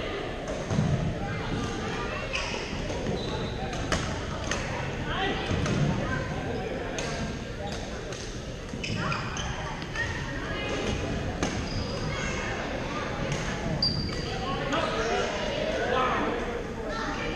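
Badminton hall during play: shuttlecocks struck by rackets in sharp pops at irregular intervals, sneakers squeaking briefly on the court floor, and players' voices in the background, all echoing in a large gym.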